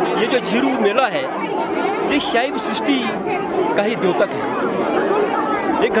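People talking over one another: voices and crowd chatter.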